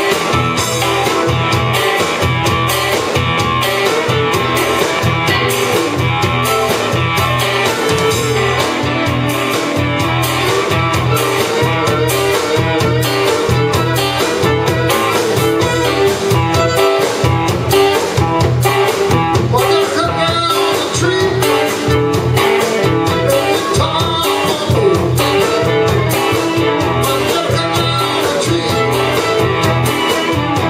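Live electric blues band playing: fiddle, electric guitars, electric bass and a drum kit keeping a steady beat.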